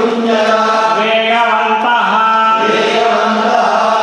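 Hindu priests chanting Sanskrit verses in a sung, steady recitation, with notes held for about a second at a time.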